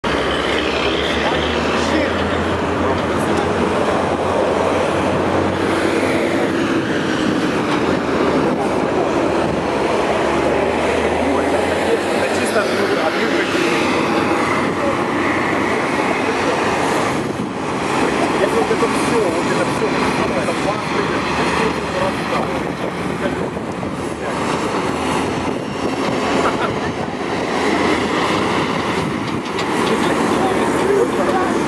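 A column of heavy military vehicles driving past on a city street, with diesel engines running. There is a low engine drone for about the first twelve seconds, and a dense mechanical clatter continues throughout.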